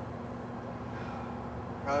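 Steady low background rumble with a faint steady hum, no distinct events.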